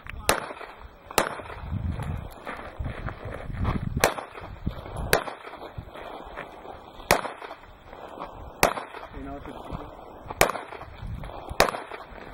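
Handgun shots fired one at a time during a pistol match stage, eight in all, spaced unevenly about one to three seconds apart.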